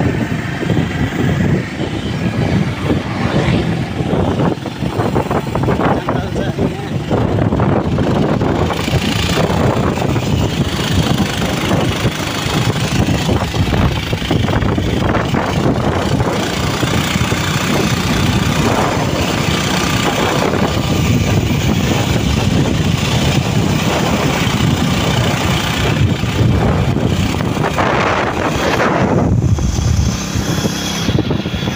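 Motorcycle on the move along a road: its engine running steadily under heavy wind rush on the microphone, a loud continuous roar with no breaks.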